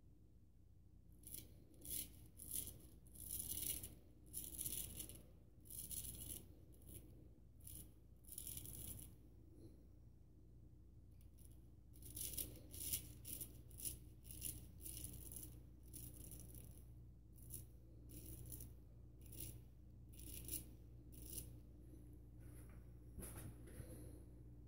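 Vintage Magnetic Silver Steel full-hollow straight razor scraping through lathered stubble in short, crisp strokes, about two a second, with a pause of about two seconds near the middle.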